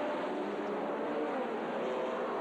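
A pack of single-seater racing car engines revving hard together as the field pulls away from a standing start, many engine notes overlapping and rising in pitch.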